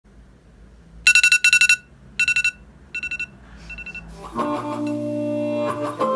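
Smartphone alarm beeping in groups of rapid, high electronic pips, starting about a second in and growing fainter with each group. Guitar music comes in about four seconds in.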